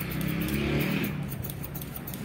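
A motor vehicle's engine passing in the street, swelling and fading in the first second, with a fast run of light snips from barber's scissors cutting hair along a comb.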